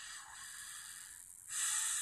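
A person breathing noisily close to the microphone: a softer breath, then a louder, rushing one from about one and a half seconds in.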